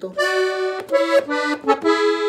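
Piano accordion played up to tempo: a quick run of short, separated melody notes, several sounded as two-note harmonies.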